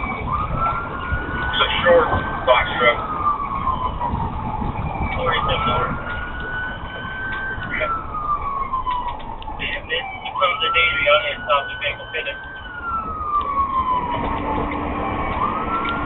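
Police siren in a slow wail: each cycle rises quickly, holds high and then falls slowly, repeating about every five seconds, over the cruiser's engine and road noise.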